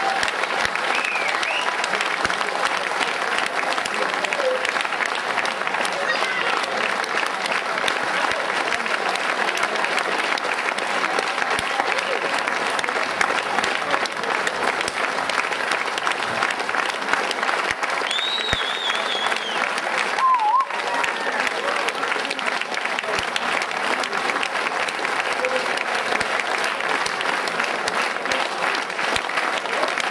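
Large audience applauding steadily and without a break, with a few short calls or whistles rising above the clapping.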